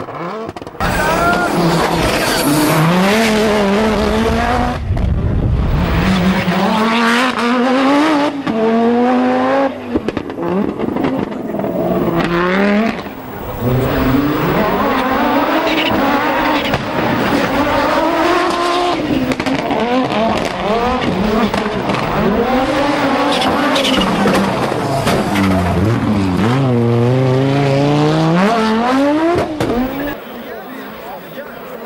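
Group B Audi quattro rally cars' turbocharged five-cylinder engines revving hard under full throttle, the pitch climbing and dropping back again and again with each gear change, over several separate passes.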